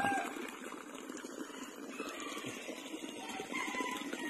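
Quiet rural outdoor background with faint distant animal calls, a few thin calls coming mostly near the end.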